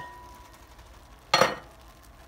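A single short clink of cookware on the stovetop about one and a half seconds in, against faint kitchen room tone.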